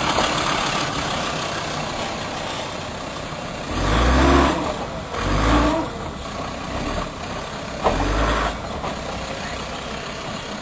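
Land Rover Defender engine working over a rutted off-road obstacle, revved in three short bursts at about four, five and a half and eight seconds in, and running steadily between them.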